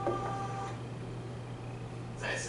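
A steady low electrical hum in a small room. For the first part of a second it is joined by a held two-note tone from the projected documentary's soundtrack, which cuts off as the video is skipped.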